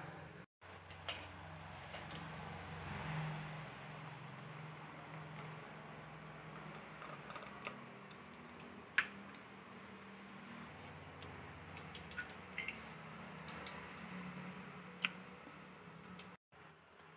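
Faint pouring and dripping of blended pomegranate juice through a plastic strainer. Two or three sharp clicks stand out, the clearest about nine seconds in and again near the end, over a low steady hum.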